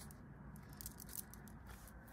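Faint rustling and scattered soft clicks of a tarot card deck being handled, over quiet room tone.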